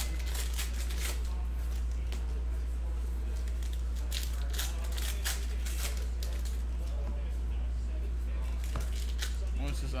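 A stack of baseball trading cards being flipped through by hand: quick dry clicks and rustles of card stock sliding against card stock, one after another throughout, over a steady low hum.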